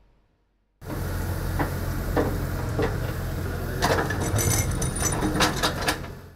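Excavator engine running steadily with a low rumble, with several knocks and clanks from its bucket digging in a water-filled drain; the sound starts suddenly nearly a second in.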